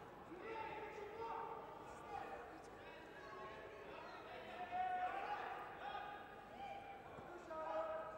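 Raised voices calling out across a sports hall during a judo bout, heard faintly and on and off throughout.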